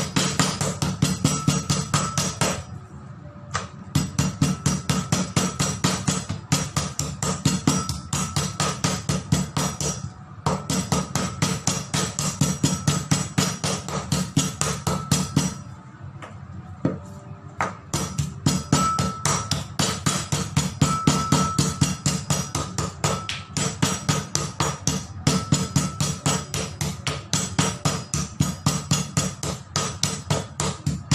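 A metal meat mallet pounding raw pork chops on a wooden cutting board: rapid, repeated strikes, several a second, in runs broken by short pauses about 3, 10 and 16 seconds in. The chops are being tenderized.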